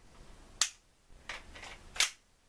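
Two sharp clicks, about half a second in and again at the end, with a couple of softer rattles between, from handling a Tokyo Marui Glock 18C gas blowback airsoft pistol and its magazine.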